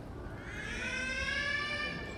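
A high-pitched, drawn-out vocal call that starts about half a second in, rises slightly in pitch and is held for over a second before fading.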